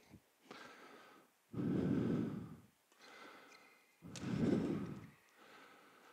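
A man breathing: two long breaths, one about a second and a half in and another about four seconds in.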